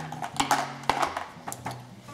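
Small plastic toy parts and packaging being handled: soft rustling with two sharp clicks about half a second apart.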